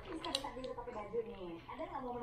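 Low, indistinct speech-like voice, with a single short sharp click about a third of a second in.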